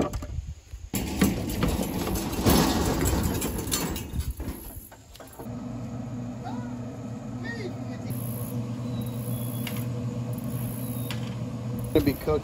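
Rustling and a few knocks, then from about five seconds in a steady low hum: a Pit Boss pellet grill's fan running as the grill starts up and smokes.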